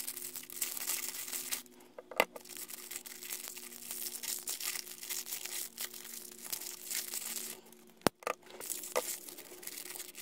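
Crinkly wrapping being torn and crumpled as small plastic spray bottles are unwrapped, with a few sharp clicks, one of them much sharper about eight seconds in, as the bottles are set down on the work mat.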